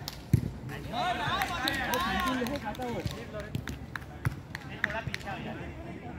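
A football kicked on artificial turf with one sharp thud, followed by a player calling out for about two seconds and then several lighter knocks of ball touches and footsteps.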